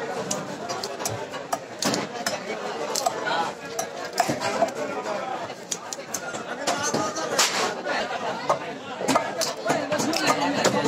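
Background chatter of voices, with frequent short sharp clicks and scrapes of small fish being scaled and cut against a boti's curved iron blade.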